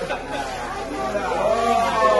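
Several people chattering and talking over each other, the voices growing louder toward the end.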